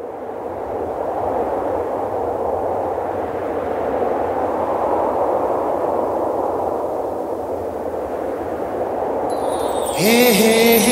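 Logo-animation sound effect: a steady rushing noise that swells in over the first second and holds, with a high shimmering sparkle coming in near the end.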